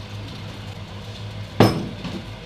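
A small drinking glass set down with a single sharp knock about a second and a half in, over a steady low mechanical hum.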